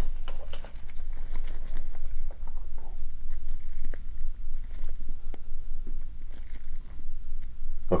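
Close-miked crinkling of gloves and small clicks of metal tweezers and an extraction tool picking at a filled pore in an artificial skin pad, over a steady low rumble.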